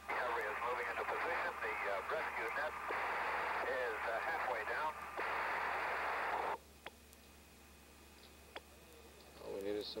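A voice transmission over a narrow, hissy radio channel, in three stretches, cutting off abruptly about six and a half seconds in. After that there is only low hiss with a couple of faint clicks.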